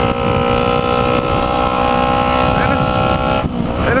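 Kawasaki Ninja 250R's parallel-twin engine running very loud and steady at cruising speed through an Atalla aftermarket exhaust that has come out of place, so it sounds almost like a straight pipe. The engine note drops away near the end.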